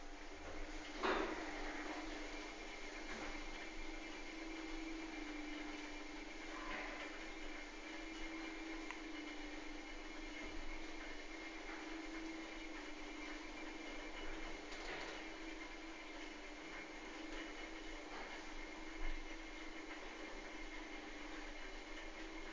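Thyssen-De Reus elevator car descending: a steady hum with a faint higher whine, and a single light click about a second in.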